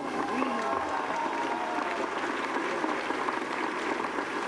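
Audience applauding steadily, with some voices mixed into the clapping.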